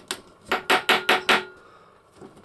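Hard plastic toy mace accessory being tapped, about five quick sharp knocks roughly a fifth of a second apart.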